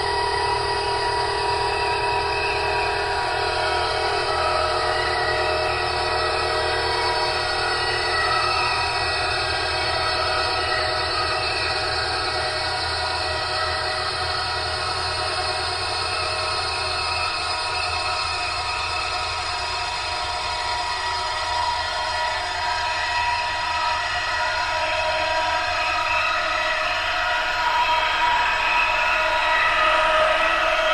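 Ambient drone from an experimental cassette: many layered, sustained tones holding steady with no beat, swelling slightly louder near the end.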